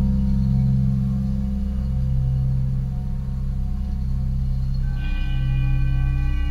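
Metal singing bowls ringing in a deep, sustained hum that wobbles slowly as the tones beat against each other. About five seconds in, another bowl is struck, adding brighter, higher ringing overtones above the hum.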